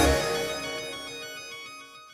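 Background music ending: the beat stops at the start and a last held chord rings on, fading steadily away.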